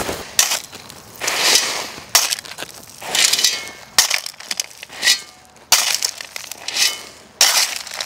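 Steel shovel digging into crushed-stone gravel: a crunching scrape of blade and stones every second or so, with the rattle of stone being tossed.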